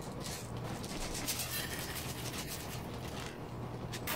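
Small dry seeds poured into a glass bowl, a grainy rushing rattle lasting about three seconds, over a low steady hum.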